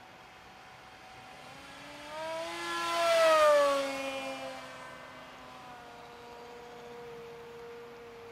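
The electric motor and propeller of the LR-1 Racing Devil RC racing plane whining as it makes a fast pass at about 150 km/h. The whine swells and is loudest about three and a half seconds in, then drops in pitch as the plane passes and flies off, settling to a steady fainter whine.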